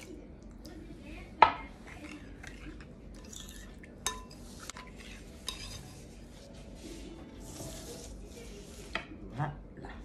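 A spoon stirring tomato sauce in a glass bowl, scraping and knocking against the glass. A sharp clink about one and a half seconds in is the loudest sound, and a second, ringing clink comes about four seconds in.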